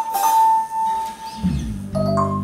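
Live band playing: a cymbal hit rings over a held electric-guitar note, and about one and a half seconds in a low sustained note comes in underneath.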